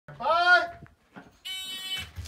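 A drawn-out shout whose pitch rises and falls, then, about one and a half seconds in, the steady electronic start beep of a shot timer.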